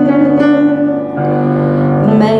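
Woman singing a slow pop ballad into a microphone with piano accompaniment; her held note fades out about a second in while the accompaniment carries on.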